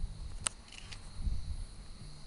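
Low, uneven rumbling on an outdoor camcorder microphone, typical of wind on the mic, with a faint steady high hum and a single sharp click about half a second in.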